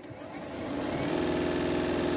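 Janome Continental M7 sewing machine stitching a seam, speeding up over the first second and then running at a steady speed.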